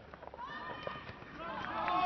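Several voices shouting and calling out during live rugby league play, building and growing louder toward the end, with a few faint knocks.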